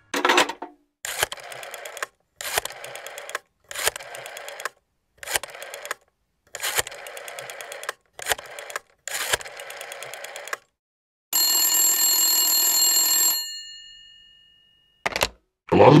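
Telephone bell ringing in repeated short bursts, about seven rings, then a longer steady ring of several held pitches that stops and fades away. A click follows just before the call is answered.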